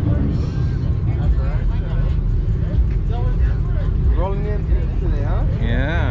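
Voices of people talking close by, over a steady low rumble.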